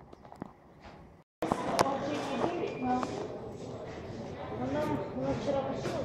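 Indistinct chatter of several people talking at once in a room, starting abruptly after a brief cut to silence about a second in, with a sharp knock just after it starts.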